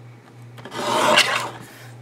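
Fiskars lever-arm paper trimmer's blade cutting through a strip of paper: one rasping cut lasting about a second, in the middle.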